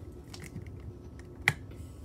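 Handling noise of a phone held close to the microphone: scattered light taps and clicks, with one sharp click about one and a half seconds in.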